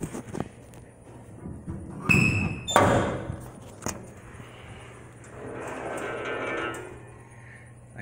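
Steel hood of a 1961 Chevrolet Impala being unlatched and raised by hand: a short high squeak and a loud metal clunk about two seconds in, then a drawn-out creak from the hinges as the hood swings up.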